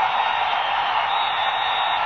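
Stadium crowd cheering a goal, a steady even noise of many voices with no single voice standing out.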